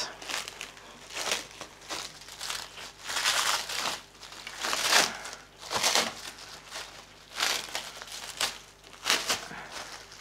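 Clear plastic packaging bag crinkling and rustling in irregular bursts as it is handled and pulled off an object.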